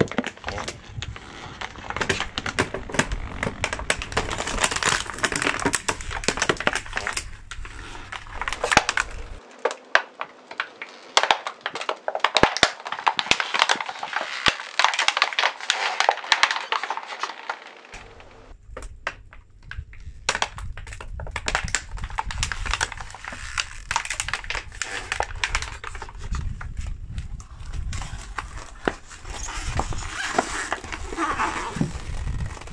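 Clear plastic packaging crackling and snapping as a car tyre rolls onto it and flattens it: a dense, irregular run of sharp cracks and crinkles, with a low rumble underneath for much of it.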